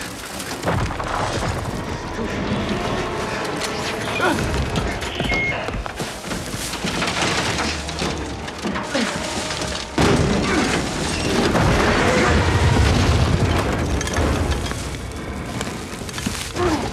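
Landmine explosions booming under a film score, with the loudest blast starting suddenly about ten seconds in and rumbling for several seconds.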